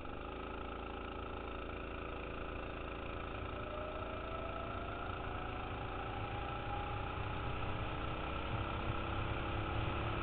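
Go-kart engine pulling out of a corner and accelerating down the straight, its pitch rising steadily for a few seconds from about a third of the way in, then holding high and getting slightly louder.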